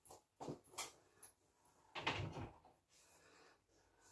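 A heavy coat being handled and hung on a wall hook: a few short knocks and rustles, then a louder half-second rustling thump about two seconds in.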